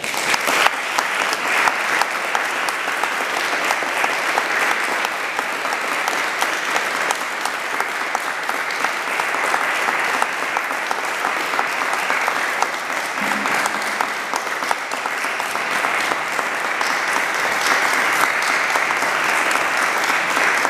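Audience applauding: dense clapping that breaks out all at once as the guitar music ends, then runs on steadily.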